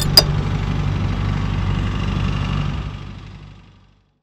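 Tractor engine running steadily at low revs, fading out near the end.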